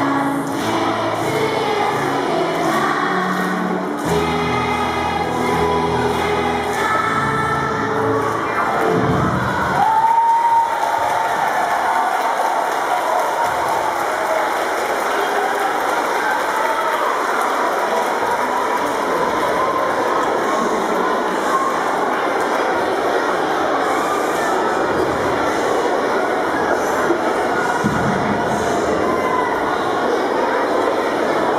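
A young children's class singing a Krakowiak folk song to an instrumental accompaniment, which ends about ten seconds in. After that comes a steady wash of crowd noise in a large hall for the rest.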